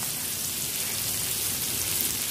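Hot oil sizzling steadily in a non-stick pan of stir-frying vegetables on high flame, as a handful of sliced onion is dropped in.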